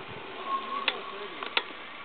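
Steady, fairly quiet outdoor background hiss, with a few faint sharp clicks about a second and a half in.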